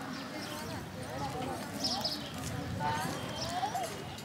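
Outdoor street ambience with distant voices calling, their pitch rising and falling, over a steady background hum.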